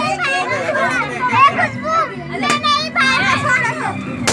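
Children's excited voices shouting and chattering over one another, with a single sharp crack about two and a half seconds in.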